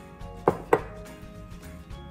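Two sharp knocks about a quarter second apart, about half a second in: a glass jar being set down on a granite countertop. Soft background music plays underneath.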